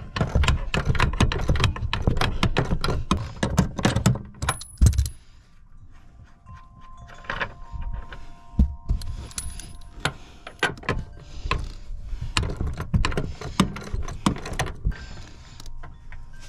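Hand socket ratchet clicking as it works seat bolts loose from a truck floor. The clicks come thick and fast for the first five seconds or so, then sparser clicks and metal clinks follow.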